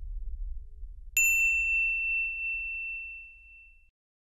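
The low end of the background music fades out, then about a second in a single bright ding strikes and rings out as one clear tone, fading away over nearly three seconds: a logo sound effect.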